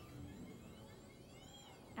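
Faint whine of a kinetic sculpture's electric motors, its pitch rising and then falling as the machine's arm moves, over a light hiss.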